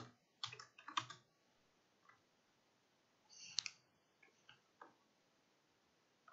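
A few faint computer-keyboard keystrokes: a short run of clicks in the first second, one more about three and a half seconds in, then a couple of very faint ones, with near silence between them.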